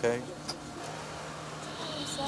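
Steady low hum of an idling sheriff's patrol car, with one light click about half a second in.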